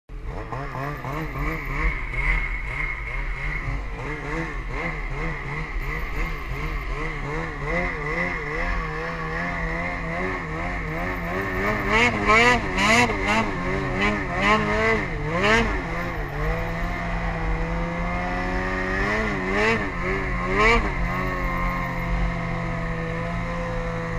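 A vehicle engine running on a ride, its pitch rising and falling again and again over a steady low rumble. Several sharp knocks come about halfway through.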